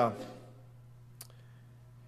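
A pause in speech, with a steady low hum and one sharp click about a second in.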